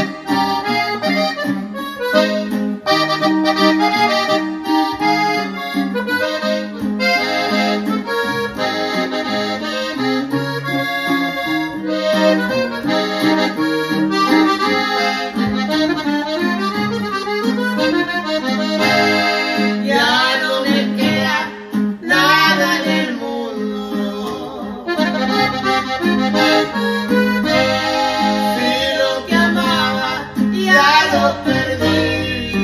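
Norteño instrumental intro: a Gabbanelli button accordion plays a quick, busy melody over bass notes and strummed chords from a bajo sexto.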